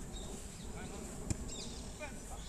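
Wind rumbling on the microphone over faint distant players' calls on an outdoor football pitch, with one sharp knock a little past halfway, such as a ball being kicked.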